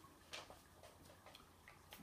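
Near silence with a few faint, irregularly spaced clicks.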